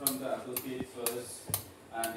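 A metal spoon tapping against an eggshell to crack the egg, three light, sharp taps about three quarters of a second apart.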